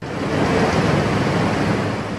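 Steady rushing, water-like noise from an apple washing and sorting line, with red apples carried along in water. It starts abruptly and fades out just after two seconds.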